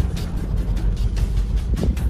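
Low, steady rumble of a car being driven, heard from inside the cabin, under background music with a steady beat of about two a second.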